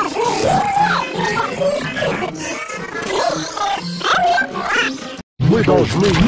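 A cartoon character's voice run through pitch-shifting and distortion effects, warbling and gliding up and down over background music. It cuts out briefly about five seconds in, then a new effected voice clip begins.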